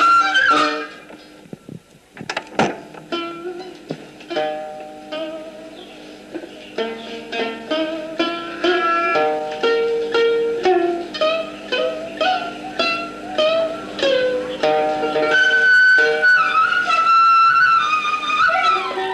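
Instrumental background music: a melody of plucked-string notes, softer for the first few seconds.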